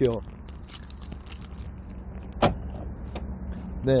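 Small rattles of a car key, then a single sharp click about two and a half seconds in and a smaller one just after three seconds, as the Lincoln MKS's trunk is unlatched with its key.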